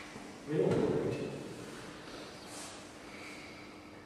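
A brief, low vocal sound from a person about half a second in, fading within a second, over a faint steady hum.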